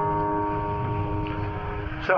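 A guitar chord ringing on after being struck and slowly fading away.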